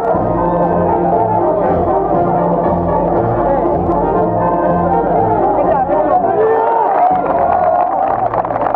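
Brass band playing, with low bass notes keeping a steady beat and crowd voices underneath.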